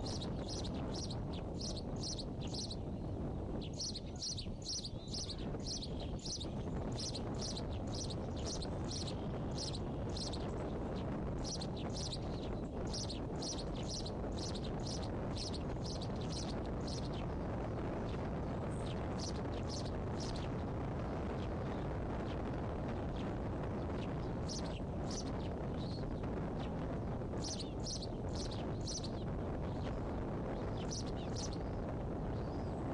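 Bald eaglet chicks chirping in series of short, high peeps, about three a second, in bouts of several seconds with pauses between, over steady low background noise on the nest microphone.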